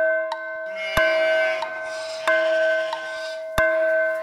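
Clock chime striking the hour, one ringing bell-like stroke about every 1.3 seconds, three of them here, as part of a count of six. Backing music plays under the strokes.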